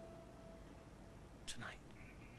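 Quiet pause: a held note of soft guitar underscore fades away, then a short breathy whisper is heard about one and a half seconds in.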